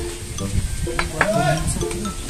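Beer poured from a glass bottle into a drinking glass, with two sharp clinks about a second in.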